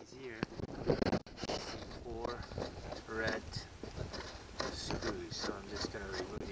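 A man's voice talking indistinctly, with faint clicks from a screwdriver turning screws in a plastic seat panel.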